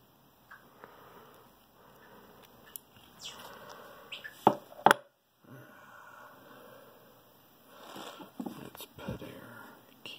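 Small-parts handling noise as lock pins and the brass cylinder plug are worked with steel tweezers: faint ticks and rustles, with two sharp metallic clicks about half a second apart near the middle.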